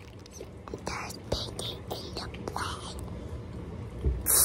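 A child whispering close to the microphone: short breathy puffs, too soft to make out as words.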